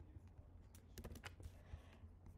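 Faint clicking of computer keys, a few clicks close together around the middle, over near silence.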